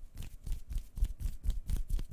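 Soft, quick tapping and scratching noises made right at the microphone by hand, a run of light clicks at about six a second, played close to one ear as the sound for a left-or-right hearing test.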